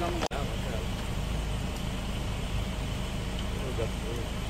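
Off-road 4x4 engine running as a low, steady rumble while the vehicle climbs a rocky slope. The sound cuts out for an instant a fraction of a second in.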